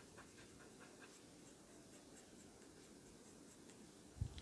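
Faint, irregular scratching of a fine-tip pen-style eraser (Tombow Mono Zero) rubbing and dabbing on charcoal-shaded paper, lifting out highlights.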